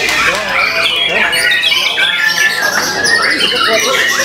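White-rumped shama singing a fast, varied song of whistles, trills and harsh notes, with a rapid rattle about two seconds in.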